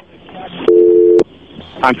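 A steady two-pitch telephone-style tone, like a dial tone, sounds loudly for about half a second just over a second in and stops with a click, over the narrow-band hiss of an air traffic control recording.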